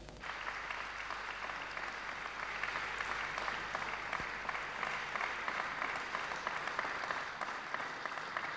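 Audience applauding: a steady, even clatter of many hands clapping.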